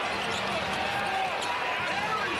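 Steady basketball-arena crowd noise during live play, with a basketball being dribbled on the hardwood court.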